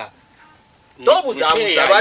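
Crickets chirping in a steady high trill. About a second in, a person's voice cuts in much louder, speaking or calling.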